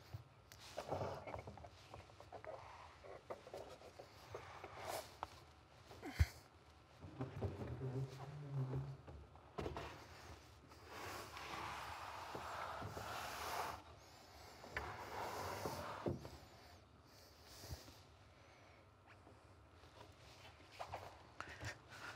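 Faint handling noises: scattered light knocks and rustling while a person moves about and handles piano action parts and keys, with one sharper knock about six seconds in.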